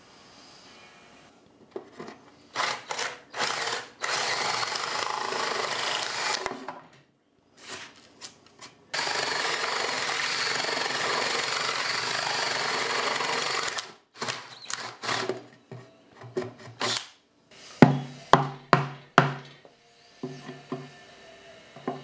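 Cordless drill boring a large hole through pine with a Forstner bit, running in bursts. It starts with several short runs, makes one long steady run of about five seconds in the middle, then gives a string of short, quick trigger bursts near the end.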